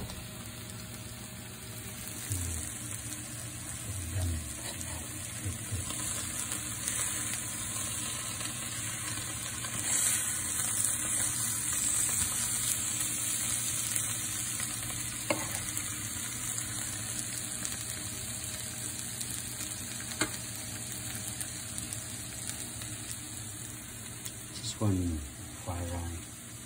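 Diced potatoes frying in a skillet: a steady sizzle that grows louder about ten seconds in, then eases, with a couple of sharp knocks of a utensil against the pan as they are stirred.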